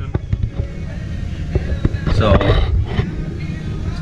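Steady low rumble of running farm machinery, with a few sharp clicks from handling close to the microphone.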